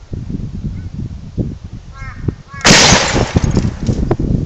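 Homemade gas-fired combustion gun going off once, about two-thirds of the way in: a single sharp, very loud bang as the sprayed-in gas ignites, with a short fading tail.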